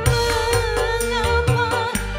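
Live band music from keyboards, electric guitar, bass and drums: a long held melody note over a steady bass line, with a sharp drum hit near the end.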